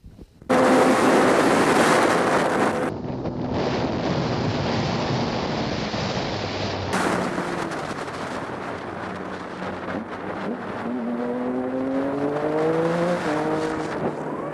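Helmet-camera audio of a Triumph Daytona 675's three-cylinder engine under way, with heavy wind rush over the microphone. About eleven seconds in the engine note climbs steadily as the bike accelerates, then drops back near the end.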